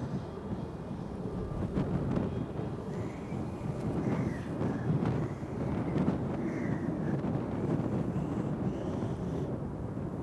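Wind buffeting the microphone outdoors: a steady low rumble with no clear strike of club on ball.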